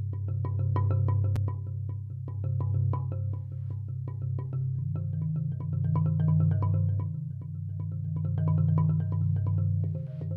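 Marimba played with four mallets: a mellow improvised progression of quick repeated strokes over a sustained low bass. It swells and eases every two to three seconds, and the bass note moves up about halfway through.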